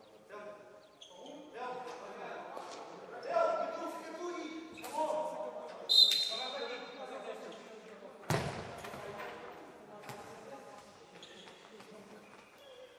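Futsal players shouting in an echoing sports hall, with a short, shrill referee's whistle blast about six seconds in. A hard ball strike follows about two seconds later.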